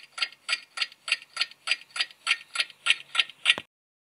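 Clock ticking sound effect, an even run of about three to four ticks a second that stops abruptly near the end. It counts down the thinking time after a question.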